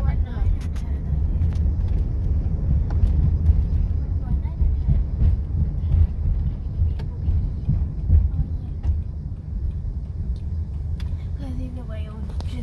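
Steady low road and engine rumble heard from inside a car's cabin while driving, with a few faint ticks.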